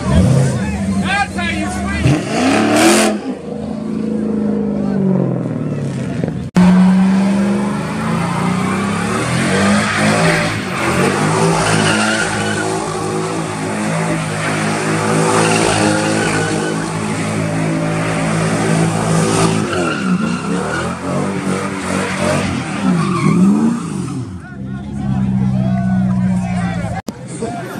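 V8 engine revving hard while a car does burnouts and donuts, rear tires squealing, the engine note rising and falling as the throttle is worked. About six and a half seconds in, an abrupt cut joins one car's run to the next: a C6 Chevrolet Corvette spinning donuts.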